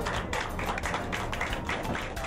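A small group of people applauding, with many quick, overlapping hand claps.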